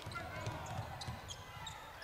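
Faint game sound from a high-school gym: a basketball being dribbled on a hardwood court, with low background noise from the hall.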